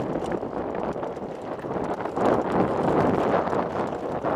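Mountain bike descending a rocky gravel singletrack: tyres crunching over stones and the bike rattling, mixed with wind buffeting the microphone, loudest about halfway through.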